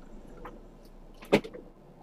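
Low steady hum inside a stopped car's cabin, with a faint knock about half a second in and one sharp, loud click a little past halfway.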